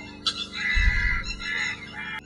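A chicken clucking over faint, steady background music.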